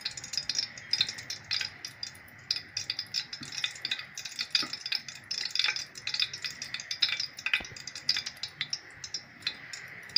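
Hot oil with a spoonful of ghee sizzling and crackling in a cooking pot, a dense, irregular run of sharp pops and spits.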